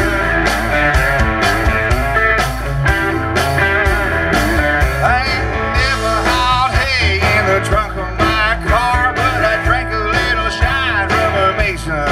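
A country band playing live and loud: drum kit, electric bass and acoustic guitar together in a steady groove.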